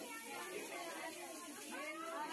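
Several women chattering over one another, some voices high and squealing.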